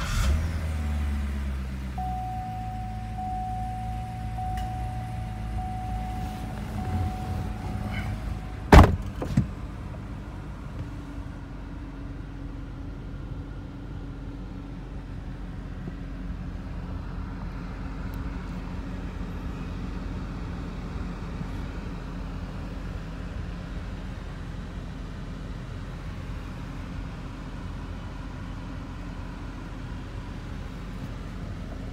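2012 Chevrolet Corvette C6's 6.2-litre V8 just after starting, its revs settling down over the first couple of seconds and then idling steadily, heard from inside the cabin. A steady electronic tone sounds for the first eight seconds or so, and two sharp clicks come about nine seconds in.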